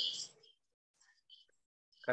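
A man's breathy, whispered vocal sounds: a short burst of breath at the start, then a couple of faint hissing syllables about a second in.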